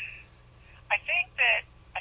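Speech heard through a telephone line, thin and narrow-sounding: a short pause, then a brief utterance about a second in as the answer begins.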